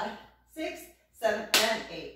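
A woman's voice counting the dance beat aloud, three short words about half a second apart.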